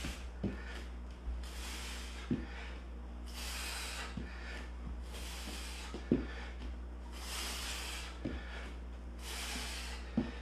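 A man breathing hard through a plank exercise: long, hissing breaths every couple of seconds, with short soft thuds between them.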